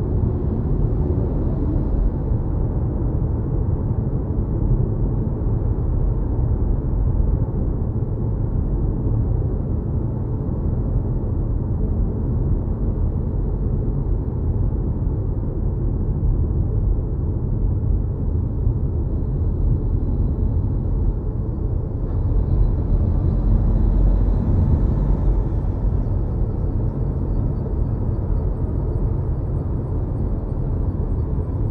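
Steady low road and tyre rumble inside an electric car's cabin at highway speed, a constant drone with no engine note. It swells slightly about three-quarters of the way through.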